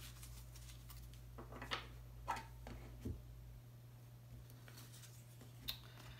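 Tarot cards being handled on a tabletop: a few soft rustles and light taps as the deck is held and cards are laid down, over a steady low hum.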